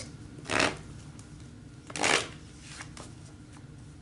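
A tarot deck being shuffled in the hands: two short rustling shuffles about a second and a half apart, the first about half a second in.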